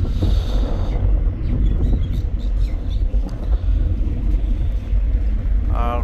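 Steady low rumble of a river passenger launch's engines while the vessel is under way.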